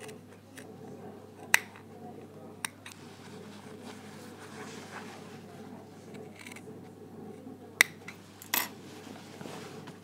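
Small scissors snipping into the corners of a welt pocket opening in blazer fabric, with a few sharp metallic clicks of the blades, the loudest near the end. A faint steady hum runs underneath.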